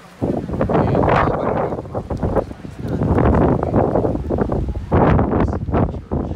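Strong wind buffeting the microphone: loud, gusting noise that starts just after the beginning and swells and eases several times.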